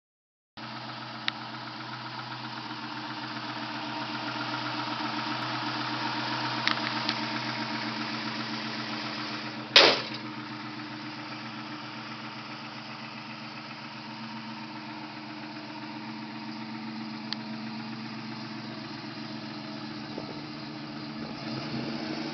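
1967 Ford Mustang fastback engine idling steadily. A single sharp bang cuts across it about ten seconds in, with a few lighter clicks before it.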